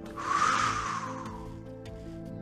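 A man blowing out a long, hissy breath that fades away over about a second and a half, the exhale as he eases into a stretch, over soft background music.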